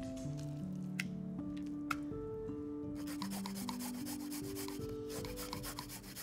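Garlic cloves grated on a fine metal rasp grater: quick repeated scraping strokes in two runs from about halfway in. Before that, a couple of water drips from squeezed spinach.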